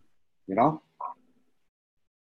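A man's voice briefly saying 'you know' over a video call, followed by near silence.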